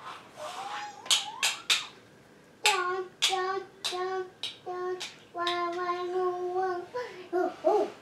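A woman singing to herself in short repeated notes, several of them held steady, with a few sharp clicks before the tune starts.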